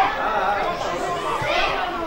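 Several voices talking and calling out at once: the on-field chatter of players and coaches during a youth football match.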